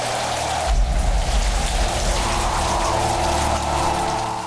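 Heavy rain falling steadily, with a deep rumble swelling about a second in, over a low steady drone.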